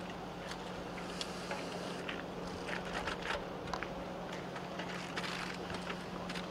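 Ambience of a large outdoor crowd in a lull: a steady low hum under a faint wash of noise, with scattered small clicks and knocks.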